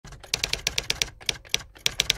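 Typewriter keystroke sound effect: a quick, slightly uneven run of sharp clicks that spaces out a little past the middle, laid over letters being typed out on screen.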